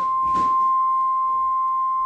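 Steady bars-and-tone test tone, a single unbroken pure pitch of the kind played with a television 'Please stand by' colour-bars card.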